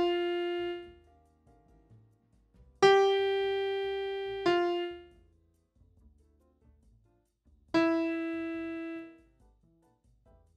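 Single piano-type keyboard notes played one at a time: one right at the start, one about three seconds in held for over a second and followed at once by another, and a last one near the end, each fading out with quiet between them. The notes are being played beat by beat into notation software, which writes them down as they sound.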